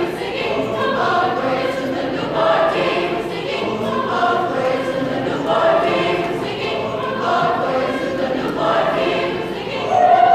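Mixed choir of girls' and boys' voices singing, in phrases that swell and fade every second or two.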